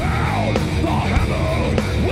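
Progressive metal band playing live and loud: electric bass, drums and distorted guitars, with a yelled lead vocal over them.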